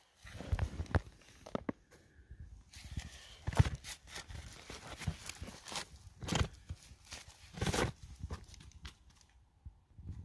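Loose rock and gravel being handled in a dirt pit: irregular crunches, scrapes and knocks of stone, some louder than others, with short quiet gaps between.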